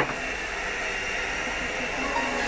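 Steady hiss of steam pouring from stacked wooden dumpling steamers over a boiling pot, with a light knock right at the start.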